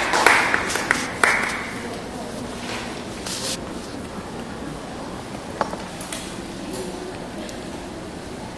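Audience applause dying away over the first second and a half, then the hushed hall with a few small clicks and shuffles.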